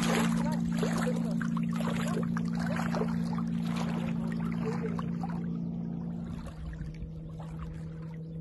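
Shallow water splashing and lapping in the shallows at the shore, fading after about six seconds, over a steady low hum.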